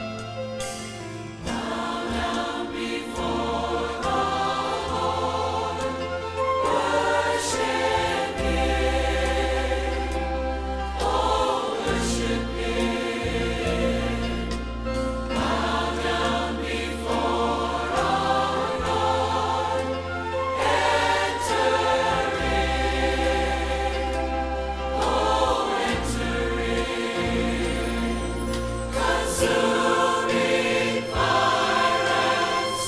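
A large church choir singing a worship medley over instrumental accompaniment, with held bass notes that change every couple of seconds.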